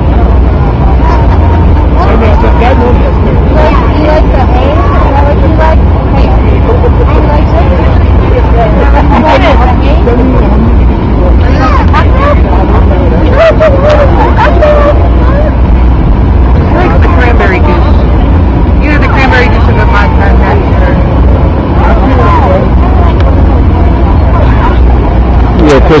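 People talking in the background over a loud, steady low rumble.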